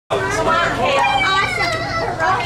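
Several children's voices chattering and calling out over one another, with no clear words.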